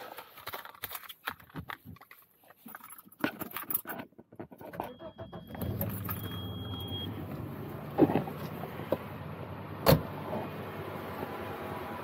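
Keys rattle in the ignition. About halfway through, the freshly rebuilt Audi 2.3 AAR inline five-cylinder starts and settles into a steady, quiet idle, running smoothly after the engine overhaul. Two short high beeps come just before the engine catches, and a sharp thump near the end is the car door being shut.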